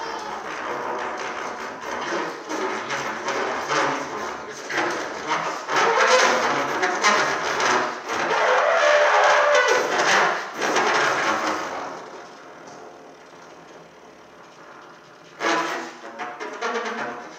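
Solo trumpet in free improvisation, played with breathy, noisy, fluttering tones rather than clean notes. It grows loudest in the middle, drops much quieter about twelve seconds in, then gives a short loud burst near the end.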